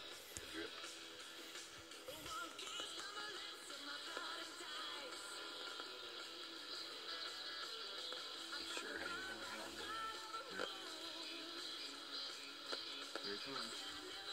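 A radio playing music at low volume, with a voice in it.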